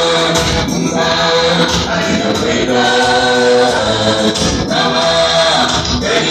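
Church choir singing a Swahili gospel song in full harmony, with several long held notes.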